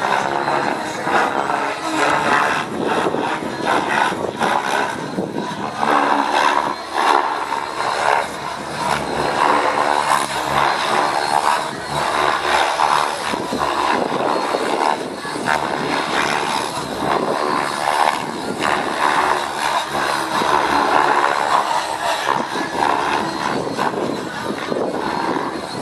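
Align T-Rex 700 radio-control helicopter flying 3D aerobatics: its rotor blades chop the air, and the rotor noise swells and eases every second or two as it flips and dives.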